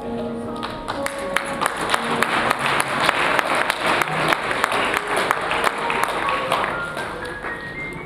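Audience applauding, a dense patter of claps building about a second in and fading near the end, over background music with sustained notes.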